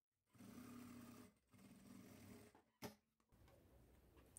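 Jack industrial sewing machine stitching quietly in two short runs, a faint steady hum with a brief pause between, followed by a single short click about three seconds in.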